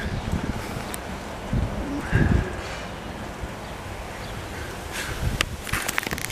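Wind gusting on the camera microphone over a steady outdoor hiss, with a few sharp clicks of the camera being handled near the end.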